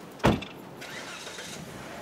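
A car's driver door slams shut about a quarter of a second in: one heavy thump with a short ring-off. A faint, brief hiss follows.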